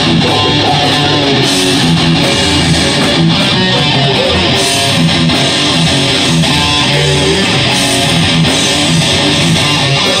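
Live rock band playing at full volume: electric guitar, bass guitar and drums together in a steady, dense wall of sound.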